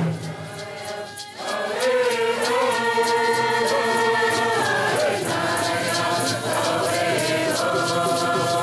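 A group of men singing a handgame song together over a steady beat on hand drums. The voices drop away briefly about a second in, then come back on long held notes while the drumming keeps going.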